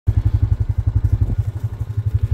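Four-wheeler (ATV) engine idling: a steady low putter of about a dozen beats a second.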